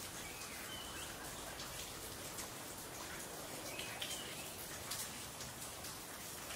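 Steady light rain with scattered drip ticks, and a few short bird chirps about a second in and again around four seconds in.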